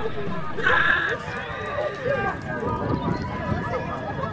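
Footballers shouting and cheering in celebration at the end of the match, with one loud shout about half a second in over the general babble of voices.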